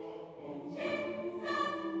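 Gospel choir singing long held chords, the voices swelling into a new chord twice.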